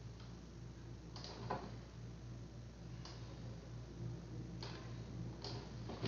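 Faint computer mouse clicks, a handful spaced a second or so apart, over a steady low electrical hum.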